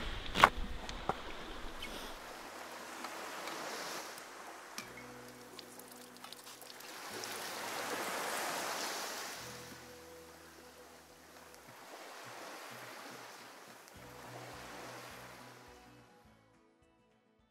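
Fresh water poured from a steel bottle over a rugged smartphone to rinse off salt water, a hiss that swells to its loudest about eight seconds in, over the wash of waves and soft background music. A sharp click about half a second in.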